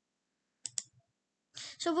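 Two quick computer mouse clicks, a fraction of a second apart, about half a second in. A voice begins speaking near the end.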